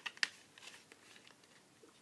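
New toothbrush packaging being handled to open it: a couple of sharp crackles near the start, then faint rustling that dies away.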